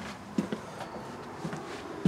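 A few soft taps over quiet room tone, the footsteps of someone walking through a travel trailer.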